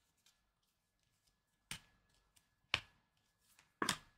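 Tarot cards being handled and dealt from the deck: three sharp card snaps about a second apart, with a few lighter paper ticks between.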